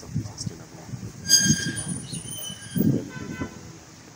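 Two short horn-like toots: a high, thin one a little over a second in, lasting just under a second, and a lower, buzzier one about three seconds in.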